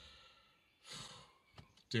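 A man's sigh, a short soft exhale about a second in, then he begins to speak near the end.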